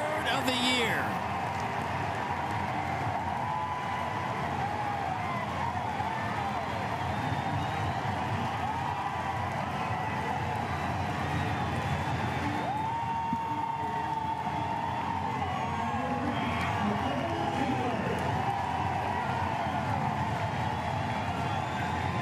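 Baseball stadium crowd cheering a home run: a steady wash of cheering with yells and whoops over it.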